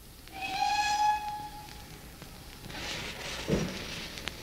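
A train whistle blows one steady note lasting about a second, followed by a rush of hiss and a short low thump.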